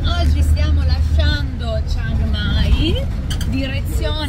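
Steady low engine and road rumble from the back of a pickup-truck taxi (songthaew) on the move, under a woman talking to the camera; the rumble eases slightly after about a second.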